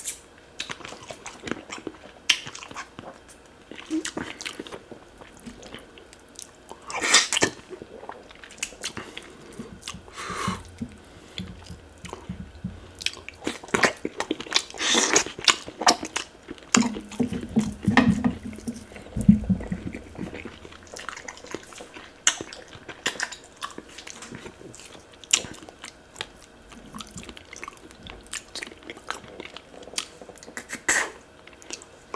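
Close-miked eating sounds of a man eating fish pepper soup with his fingers: wet chewing, lip smacks and clicks, with a few louder sucking bursts.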